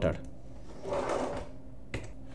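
A short rush of soft noise lasting under a second about halfway through, then a single sharp click near the end, the kind a computer mouse button makes.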